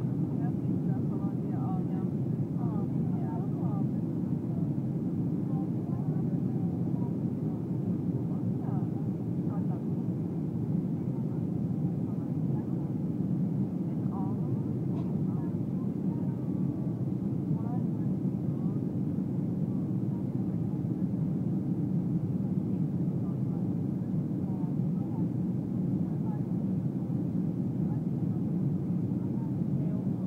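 Steady low cabin noise of a Boeing 737 airliner in flight, engine and airflow noise heard from inside the cabin during descent, with faint passenger voices underneath.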